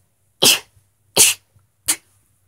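A girl sneezing three times in quick succession, short, sharp 'kitten sneezes' about two-thirds of a second apart.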